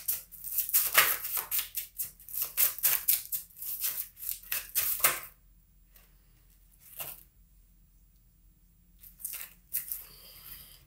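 A deck of tarot cards shuffled by hand: quick papery rustling strokes for about five seconds, then a pause broken by a single card sound, and a short burst of shuffling near the end.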